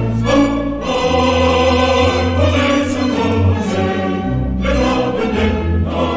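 Orchestral opera music with a choir singing over sustained low notes in the orchestra.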